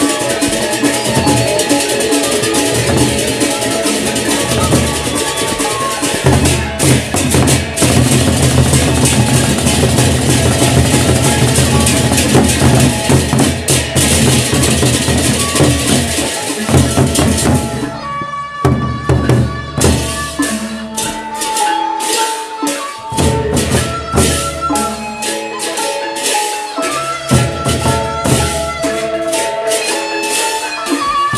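A gendang beleq ensemble playing an opening piece: large double-headed barrel drums beaten with sticks, together with crashing hand cymbals and metal percussion. About 18 seconds in, the dense, loud crashing thins out into sparser strokes with ringing pitched notes.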